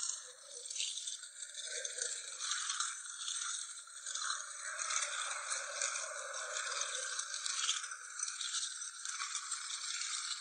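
Aluminium walking frame scraping and rattling along a concrete street as it is pushed, an uneven scratchy noise with no steady rhythm.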